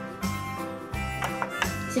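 Background music with a steady low bass line under light higher notes.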